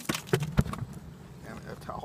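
A few short, sharp knocks and clicks in the first half second, from handling a fish and containers in a plastic cooler on a dock, then quieter.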